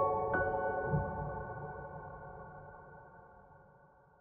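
Soft, slow piano music: a last high note struck just after the start, ringing on with the chord beneath it and fading out to nothing by the end.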